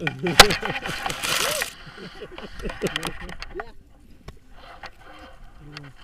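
Paragliding harness being handled and unclipped: one sharp loud click about half a second in, a burst of rustling soon after, then a few fainter clicks, with brief voices.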